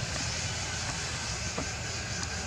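Steady outdoor background noise: a low rumble under a high hiss, with a faint click about one and a half seconds in.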